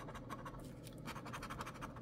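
Gold coin-style scratcher rubbing the silver latex coating off a scratch-off lottery ticket in rapid, faint, even strokes.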